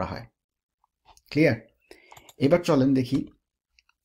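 A man's voice speaks a short phrase after a pause of about two seconds. Faint computer-keyboard clicks sit in the pause.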